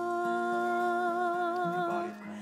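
A singer holding one long note with a slight vibrato over steady instrumental accompaniment, the note ending right at the close.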